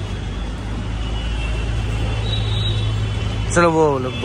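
Steady low engine hum of street traffic. Near the end a person's voice breaks in with one short, loud call that falls in pitch.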